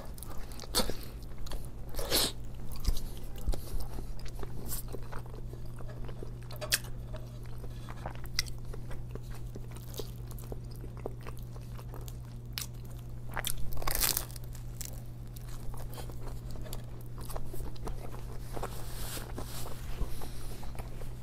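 Close-miked biting and chewing of a bagel sandwich with lox and cream cheese, with many short wet mouth clicks and smacks and two louder moments, about two seconds in and again near fourteen seconds.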